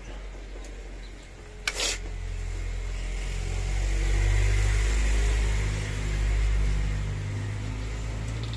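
Mitsubishi Mirage G4's three-cylinder engine idling steadily after a misfire on cylinder 3, now running smooth with the enlarged injector 3 connector socket taped tight. Its sound swells for a few seconds in the middle, and a single sharp click comes at about two seconds in.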